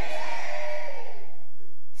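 The echo of a man's shouted, microphone-amplified voice dying away in a large hall, fading out over about a second and a half.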